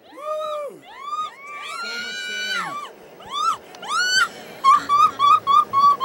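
Several people whooping and cheering in long rising-and-falling shouts that overlap, ending in a quick run of short, repeated hoots of laughter.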